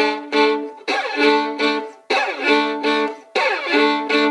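Solo violin bowing a rhythmic passage in double stops, with quick slides into repeated chords. It is played at tempo to show the dissonant high 'grab' effect in context.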